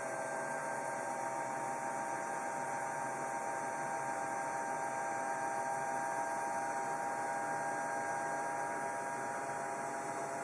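Steady electrical hum and hiss, with a few faint steady tones and no distinct events.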